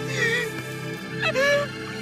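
A woman's grief-stricken crying: a short wavering sob near the start, then a rising cry a little past a second in, held briefly. Beneath it runs a low, steady orchestral chord.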